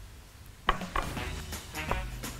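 Quiet background music, with a sharp tap about two-thirds of a second in and the soft rubbing of a gloved hand mixing flour and salt in a glass bowl.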